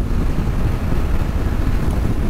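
Steady wind rush and road noise from a Honda Africa Twin motorcycle at about 65 to 70 mph, with wind buffeting the microphone. It is a loud, low rumble with no clear engine note standing out.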